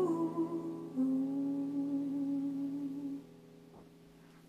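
A woman's voice hums the last notes of a song over a held piano chord. One long note wavers slightly, then stops about three seconds in, leaving only faint room noise.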